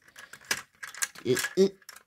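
Small clicks and knocks from handling a die-cast model car and its opened door, two of them sharp and about half a second apart, with a brief hesitant "uh, uh" after them.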